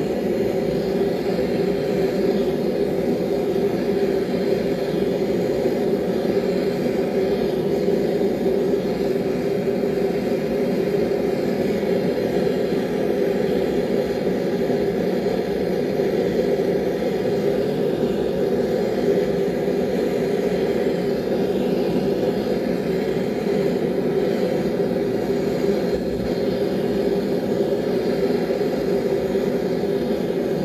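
Forge running steadily and loudly while a knife blade heats toward quenching temperature.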